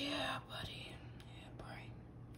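A woman's soft, breathy whisper at the start, followed by a few faint taps and slides of tarot cards being handled on a tray.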